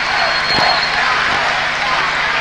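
Large arena audience applauding, a steady even wash of clapping at the end of a dance.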